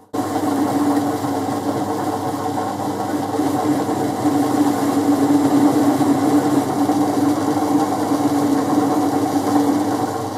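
Boxford lathe running steadily under power, its spindle and drive giving an even mechanical hum with a steady tone.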